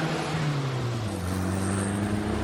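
Car engine running as it drives along a street. Its note dips about a second in, then holds steady at a new pitch.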